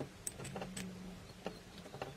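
Small chrome-plated metal parts clicking and clinking as they are handled and fitted together, with a handful of sharp, irregular ticks over a faint steady low hum.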